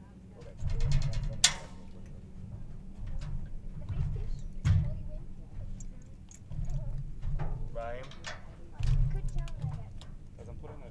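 Indistinct voices mixed with low thumps and rumbling bursts, with a sharp click about a second and a half in.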